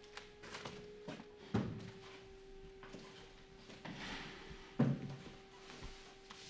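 Knocks and thumps of a wooden chair being moved as someone sits down at a desk, the two loudest about a second and a half in and near the end. A steady held tone runs underneath.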